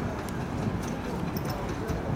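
Hoofbeats of a racehorse galloping on a dirt track, heard as a steady low rumble.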